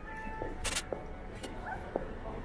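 Busy pedestrian plaza street ambience: crowd noise and a few sharp steps or knocks, over steady tones of music playing from nearby shops, with one short high yelp-like call near the end.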